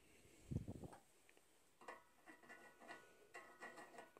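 Near silence in a small room, with a soft low thump about half a second in, then faint metallic ticks and clicks as a steel spark plug fouler is handled and set against a catalytic converter's O2 sensor bung.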